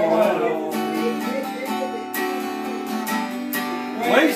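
Acoustic guitar strumming chords in a steady rhythm, an instrumental bar between sung lines.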